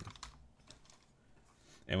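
Keystrokes on a computer keyboard in a quick run, mostly in the first half second, then faint.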